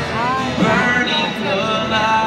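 Live country song played in an arena: a man singing lead over his band, heard from the audience stands.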